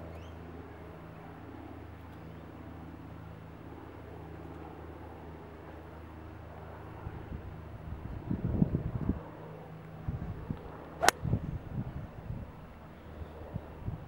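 Ping G25 hybrid golf club striking a ball off the tee: a single sharp click about three-quarters of the way in, over a steady low rumble.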